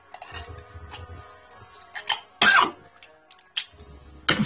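A man coughing and gagging while forcing a hot dog down his throat with his fingers: a short cough about two seconds in, then one loud cough a moment later.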